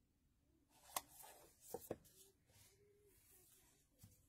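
Quiet handling of a cardboard card box and a deck of cards: one sharp click about a second in and two more close together a little before the two-second mark, otherwise near silence.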